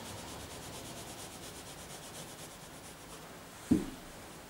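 Graphite pencil shading on drawing paper, the lead rubbing across the page in quick repeated strokes as dark tone is laid into the drawing. The strokes fade out after a couple of seconds, and a brief dull thump follows near the end.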